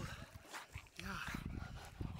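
A man's short exclamation at the cold of the water, with lake water splashing around him as he and a dog move in it.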